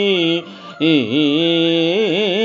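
A man singing a Telugu padyam in a slow, melodic raga style, holding long wavering notes. He breaks off for a short breath about half a second in, then resumes with a swooping dip in pitch.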